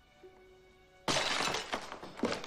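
A drinking glass shatters about a second in, a sudden loud crash followed by the sound of pieces falling, over soft background music.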